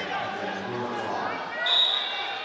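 Voices calling out in a large hall. Near the end comes a short, high, steady referee's whistle blast, the loudest sound, ringing on briefly in the hall.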